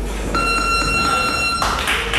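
Boxing gym round timer sounding one steady, high electronic beep a little over a second long, starting a moment in and cutting off abruptly.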